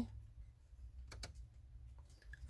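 A few faint clicks about a second in, a car's headlight switch being turned, over a low steady hum.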